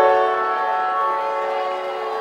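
Electronic music over a concert PA: a synthesizer chord that starts at the beginning and is held steady, with no beat or drums.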